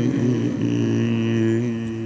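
A man chanting in Arabic holds one long, steady note on the closing 'rabbil-'alamin' of the supplication, after a brief break about half a second in. It fades slightly near the end.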